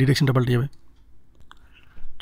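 A man's voice speaking briefly, then a pause broken by a single faint click about one and a half seconds in.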